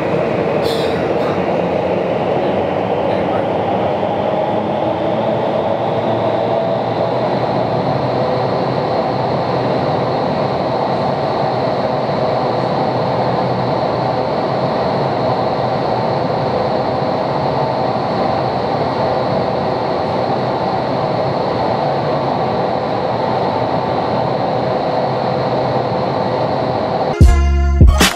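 Vertical wind tunnel fans and airflow, a steady loud rush of air through the flight chamber while a flyer is held aloft. A high whine rises in pitch over the first several seconds, then holds steady.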